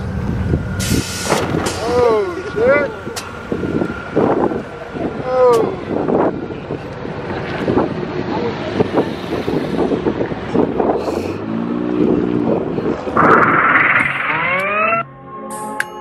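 Voices calling out over wind noise on the microphone, with car engines running in the background. Near the end an engine revs up in a rising sweep, and electronic music cuts in just after.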